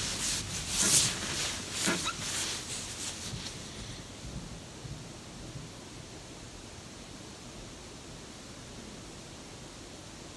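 Rustling and rubbing from a person shifting or handling something, during the first three seconds or so, then a steady faint hiss of room tone.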